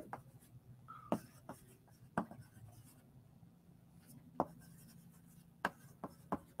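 Chalk writing on a blackboard: a few sharp, scattered taps and strokes of the chalk against the board over a low, steady room hum.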